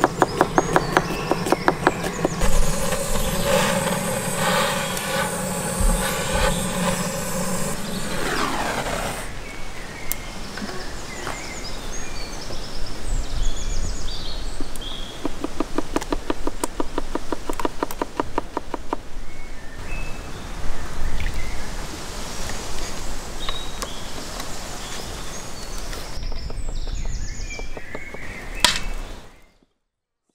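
Knife chopping fast on a cutting board in quick runs of even strokes, with birds chirping.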